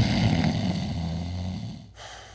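A man snoring: one long, loud snore that fades gradually and breaks off just before the end.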